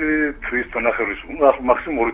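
Speech only: a caller's voice talking over a phone line, sounding narrow and thin.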